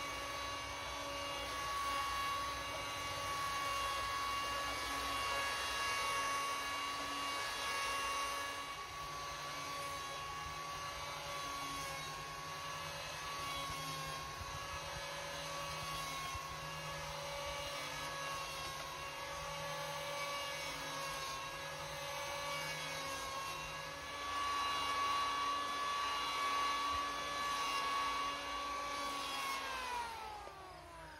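Corded electric hand power planer cutting a spruce oar shaft down to eight sides: a steady high motor whine with small dips in pitch as the blades take wood, winding down at the very end.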